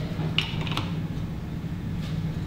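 Two light clicks of sunglasses being handled at a laser lens-test fixture, about half a second and three-quarters of a second in, over a steady low room hum.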